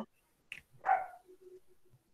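A single short, faint high-pitched yelp about a second in, followed by a faint low tone.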